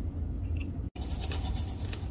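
Low handling rumble with faint scratching and rubbing as a can and a mixing bowl are handled; the sound cuts out for an instant about a second in.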